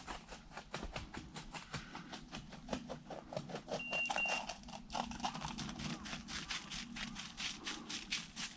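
Footsteps crunching through snow and dry grass in a quick, even rhythm of several steps a second.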